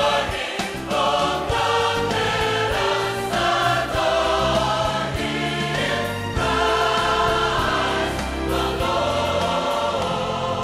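Choral music: a choir singing slow, held chords over a deep bass.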